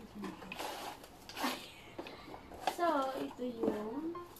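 Cardboard and plastic packaging rustling and scraping in short strokes as hands rummage inside a laptop box. Near the end a girl's voice makes a drawn-out wordless sound.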